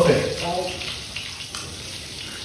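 Fish frying in hot oil in a pan, a steady sizzle.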